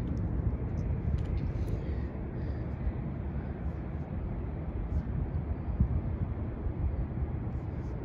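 Outdoor city ambience: a steady low rumble of distant traffic and air, with a few faint ticks and no clear single event.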